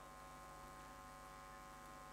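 Near silence: a faint, steady electrical hum, a stack of even tones with light hiss, from the microphone and sound system.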